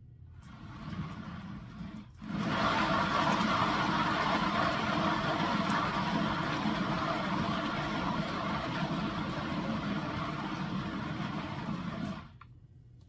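Motor-driven turntable spinning a wet acrylic-pour canvas: a steady mechanical whirr that starts softly, jumps louder about two seconds in, and cuts off abruptly at the end.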